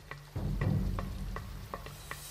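Water dripping and plopping in small, separate drops onto the surface of a creek, over a low steady hum that comes in about half a second in.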